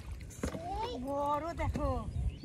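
A woman's voice calling out in a long, drawn-out exclamation that starts about half a second in, over a low rumble.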